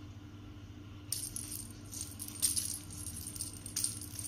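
A cat's wand toy, a toy mouse and feathers on a string, rattling and jingling in irregular bursts as it is swung and swiped at by a cat, starting about a second in. A faint steady low hum lies underneath.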